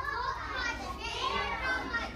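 Young children's voices talking over one another, a steady hubbub of several small voices at once.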